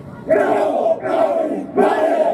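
A group of soldiers shouting a haka-style yel-yel chant in unison: three loud, short shouts in quick succession.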